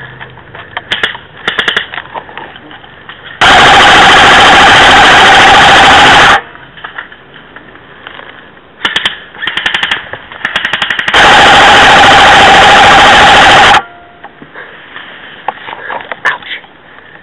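Airsoft rifle firing two long full-auto bursts right at the microphone, each about three seconds long and loud enough to clip the recording, with a steady mechanical whine running through them. Shorter runs of rapid sharp clicks come a few seconds before each burst.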